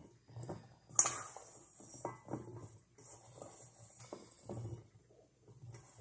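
Hands tossing oiled acorn squash pieces in a stainless steel bowl: irregular soft knocks and rustles of the pieces against the metal, with a sharper knock about a second in.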